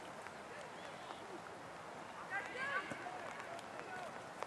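Faint distant voices calling out over a steady outdoor hiss, with a cluster of raised shouts about two seconds in.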